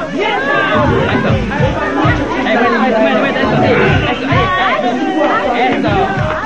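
Many voices chattering and calling out at once over dance music with a low beat.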